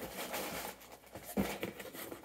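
Faint rustling and scraping of hands handling cardboard inside a shipping box, with a soft knock about one and a half seconds in.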